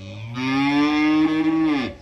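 One long, deep mooing call, swelling in over the first half second, holding, then dropping in pitch as it cuts off near the end.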